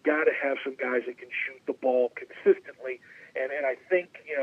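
Speech: a person talking steadily, with a thin, phone-like sound that has nothing above the upper midrange.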